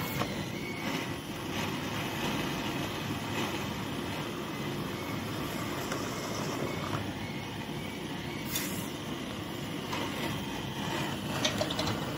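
Gas blowtorch burning steadily, an even low rushing noise, with a short sharp noise about eight and a half seconds in.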